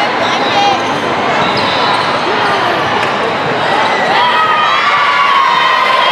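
Hubbub of many voices chattering and calling in a large hall, with a ball bouncing on the court floor.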